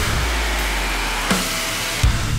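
A break in the drumming: the heavy rock backing track holds a sustained wash of distorted, noisy sound over a long low bass note that fades out past the middle, with one light hit a little past halfway.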